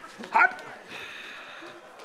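One short yelp-like vocal cry about half a second in, followed by low background noise.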